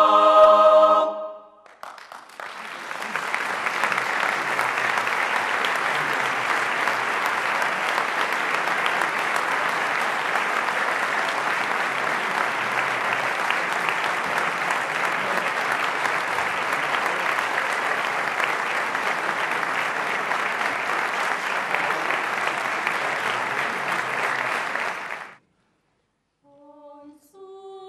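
A mixed choir's final held chord ends about a second and a half in, followed by an audience applauding steadily for over twenty seconds, cut off abruptly near the end.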